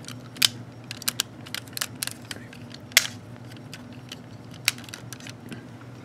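Irregular clicks and snaps of hard plastic toy parts as a transforming robot figure's wings are handled and plugged into place, the loudest clicks about half a second in and about three seconds in. A faint steady low hum runs underneath.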